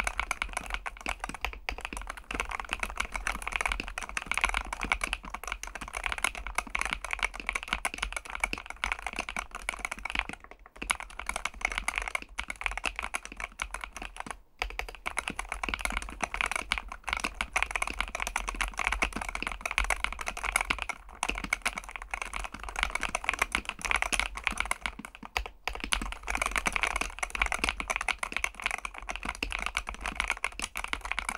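Steady fast typing on a Varmilo Minilo75 HE keyboard with magnetic Hall-effect linear switches in an aluminium-plate, tray-mount build: a dense run of clear key clacks. The typing stops briefly three times, about 11, 14 and 25 seconds in.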